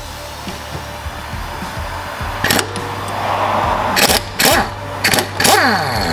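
Air impact wrench run in several short bursts, undoing the 14 mm bolt that holds the coilover shock to the hub, over background music.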